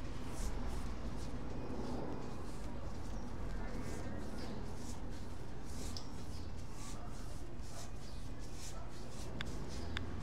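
Camel-hair paintbrush swishing varnish onto a wooden panel in repeated strokes, over a steady low hum.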